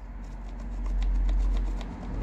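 Pencil scratching along an OSB board in a run of faint, quick ticks, under a low rumble that swells toward the middle and fades.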